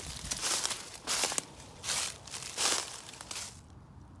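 Footsteps crunching through dry fallen leaves on a forest floor, about five steps at a steady walking pace.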